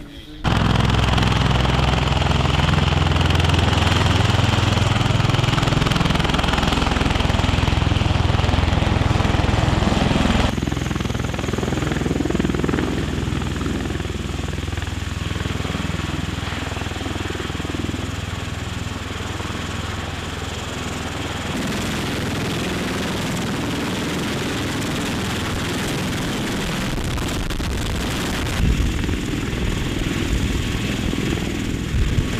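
MV-22 Osprey tiltrotor hovering low, its two rotors and turboshaft engines running with a loud, steady, deep drone. The sound shifts abruptly twice, about a third and about two-thirds of the way through.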